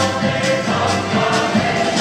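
Live Ukrainian folk music: a mixed choir singing sustained notes over a folk band of accordions, violins and drums, with a steady beat.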